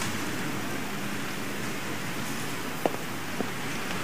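Audience applauding steadily in a large hall, an even patter of many hands clapping.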